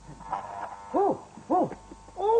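Two short, high 'ooh' cries from a man's voice, each rising and falling in pitch, about half a second apart.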